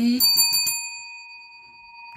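A small metal hand bell struck once, ringing with a clear high tone that fades slowly. It is rung to mark a winning match on the scratch card.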